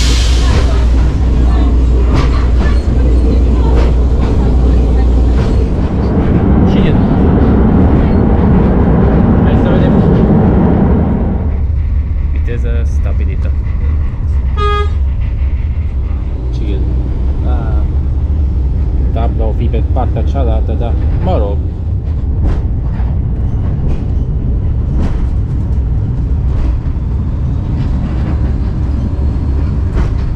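Vintage Malaxa diesel railcar under way, heard from inside the car: a heavy low drone with running rattle, louder over the first dozen seconds, then a short horn toot about halfway through.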